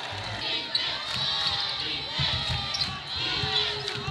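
A basketball being dribbled on a hardwood court, repeated low bounces over the murmur of an arena crowd.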